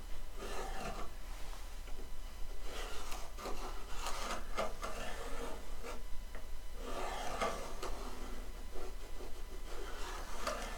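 A pencil scratching along a ruler's edge on a wooden strip, marking a line in three separate spells of strokes with short pauses between them.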